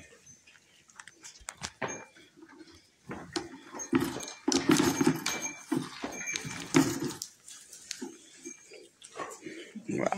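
Goat doe and her nursing kid: short low grunting sounds mixed with clicky, rustling noise, busiest from about three to seven seconds in.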